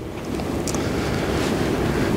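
A steady, low rushing noise of air on the microphone, growing slightly louder over about two seconds.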